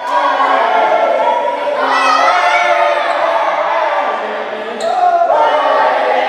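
A group of voices singing together in drawn-out, wavering phrases, with brief breaks about two seconds and about four and a half seconds in.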